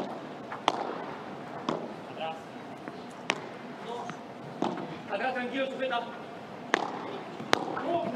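Padel rally: about six sharp knocks of the ball off rackets and court, irregularly spaced roughly a second apart, with faint voices in the background.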